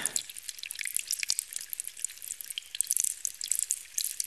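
Water dripping: a fast, irregular patter of small high-pitched drips.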